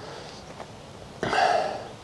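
A man's short, noisy breath sound, lasting about half a second, a little past halfway through, over a quiet outdoor background.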